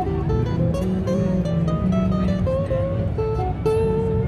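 Godin MultiAc Ambiance Steel, a koa-topped steel-string acoustic-electric guitar, played as a single-note riff. Plucked notes move a few times a second, with a longer held note near the end.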